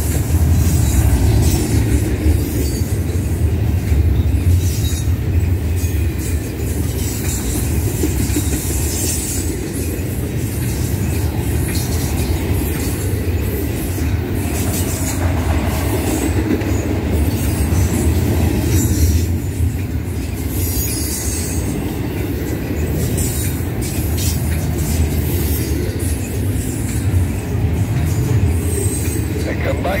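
Double-stack intermodal container cars of a freight train rolling past at close range: a steady low rumble of steel wheels on rail with clickety-clack over the joints, and brief high wheel squeals now and then.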